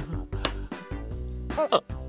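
A bright metallic ting, a cartoon sound effect, about half a second in, ringing out for under a second over light background music.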